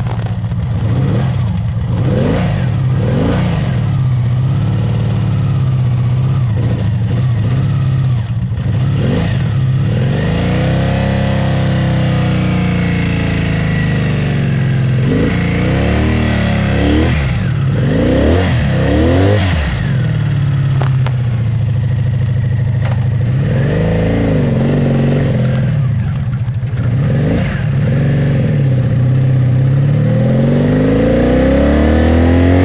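1985 Honda Magna 700's V4 engine running and revved by hand at the throttle: a few quick blips in the first seconds, a long rev about ten seconds in, a cluster of sharp revs near the middle, another around twenty-four seconds, and the revs climbing again near the end.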